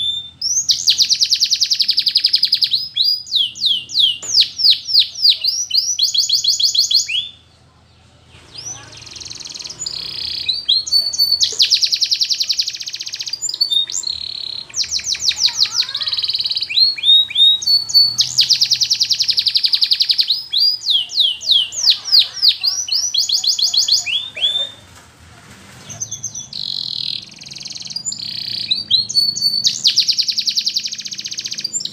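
Domestic canary singing: long, loud phrases of fast repeated notes and rapid trills with down-slurred whistles. The song breaks off briefly about a quarter of the way in and again about four-fifths of the way through.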